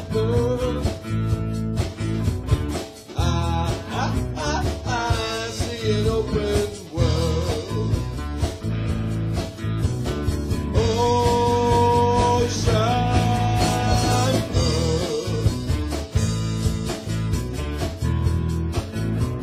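A rock band playing a song live in a small rehearsal room: drum kit and electric guitars together, with a long held note about two-thirds of the way through.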